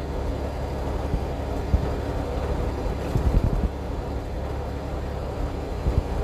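Steady low rumble of a semi-truck's engine and road noise heard inside the cab while driving, with a few short low thumps around three seconds in.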